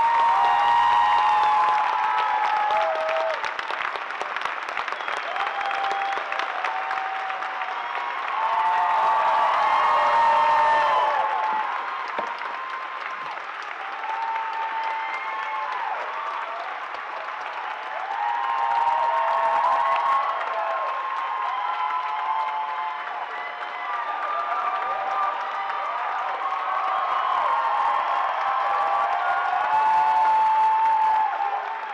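A large audience applauding and cheering in a standing ovation, with whoops and shouts over continuous clapping. It swells four times: near the start, about ten seconds in, about twenty seconds in and near the end.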